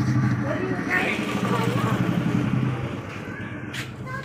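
A steady low hum, like an idling engine, with faint voices over it in the first second or so.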